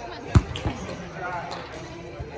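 A volleyball struck by a player: one sharp slap about a third of a second in, then a softer knock a moment later, with players' voices in the background.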